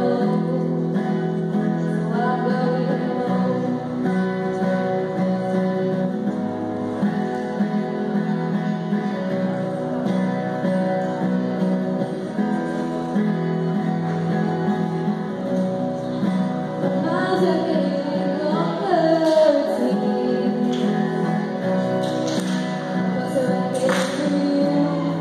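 A woman singing into a microphone, accompanied by a strummed acoustic guitar, in a live performance.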